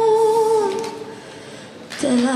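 A woman singing to her own acoustic guitar: she holds one long note that dips slightly as it ends under a second in, followed by a quieter gap before her next phrase.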